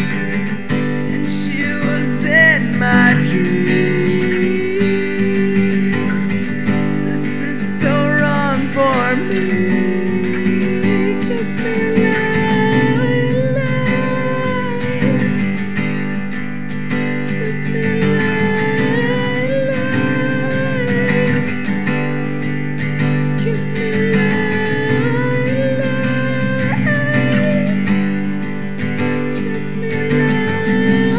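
Acoustic guitar strumming chords, with a wordless sung melody over it.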